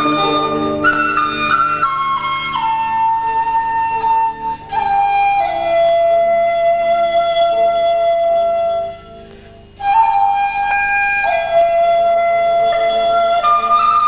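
Chinese bamboo flute (dizi) playing a slow melody of long held notes that step down to a long low note, over a soft accompaniment of lower repeated notes. The flute breaks off briefly about nine seconds in, then comes back.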